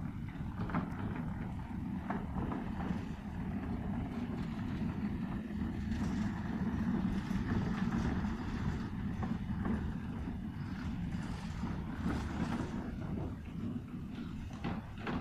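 Wind buffeting the microphone: a steady low rumble that swells and eases, with a few light knocks.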